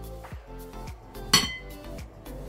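A kitchen knife clinks once, sharply, against a ceramic bowl a little past halfway, with a brief ring, over background music with a steady beat.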